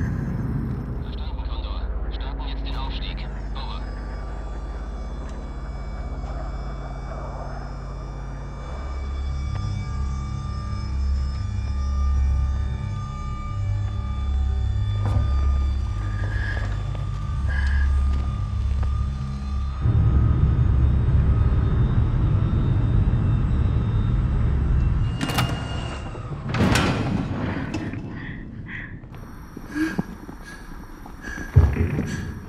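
Film soundtrack of drawn-out droning tones over a deep rumble that begins to pulse about a third of the way in. About two-thirds in it gives way to a dense, louder noise, with two short loud bursts near the end before it quiets.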